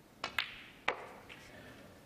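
Snooker cue and balls clicking during a shot: three sharp clicks within about a second, as the cue strikes the cue ball and the balls collide.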